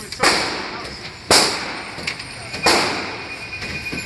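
Three gunshots, spaced roughly a second or more apart, each followed by a short echoing tail in an indoor range.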